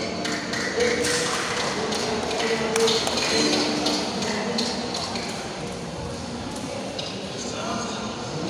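Film soundtrack played over a hall's loudspeakers: speech mixed with a few held musical notes, echoing in a large gymnasium.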